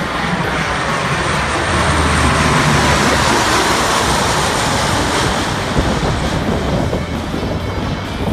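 Four-engine turboprop C-130 Hercules air tanker flying low overhead: a loud propeller and turbine roar that swells as it passes over about halfway through, its whine falling in pitch, then eases as it flies away.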